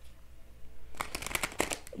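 A tarot deck being shuffled by hand: a quick run of crisp card clicks starting about halfway through.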